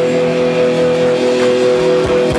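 Live rock band's amplified electric guitars holding a chord that rings steadily, with the drum beat dropped out.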